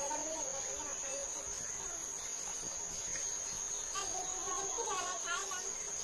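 Crickets trilling, a steady high-pitched chirring, with faint voices talking in the background near the start and again about four seconds in.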